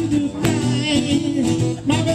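Two acoustic guitars played live, a rhythmic blues shuffle with a repeating bass-note pattern.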